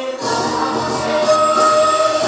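Korean folk (pungmul) music: a group of voices sings long held notes over drumming, with a bright crash of percussion right at the start.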